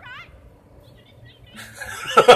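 A high-pitched voice from the drama playing quietly at the start, then a man starting to laugh near the end, getting louder.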